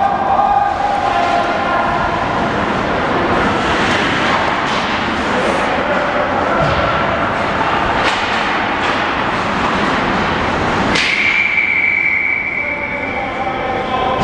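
Ice hockey rink during play: a steady wash of noise with voices and occasional sharp clacks of sticks and puck. About eleven seconds in, a steady high tone starts abruptly and holds for about three seconds.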